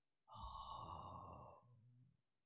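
A man sighs once, a faint breathy exhale lasting about a second that fades away.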